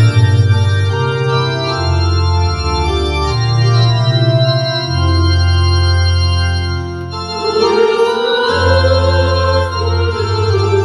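Electronic keyboard on a church-organ voice playing sustained chords over a moving bass line. About seven and a half seconds in, a choir starts singing along with it.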